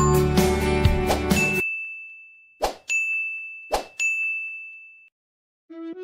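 Subscribe-button animation sound effect: background music cuts off, then a single high bell-like ding rings out with two sharp clicks about a second apart, fading away. A light keyboard melody starts near the end.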